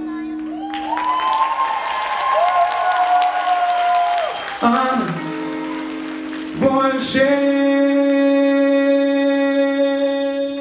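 Live male pop vocal through a stage microphone, holding long sustained notes: one swelling and falling away over the first few seconds, then a long steady note from about two-thirds of the way in. Audience applause runs under the first held note.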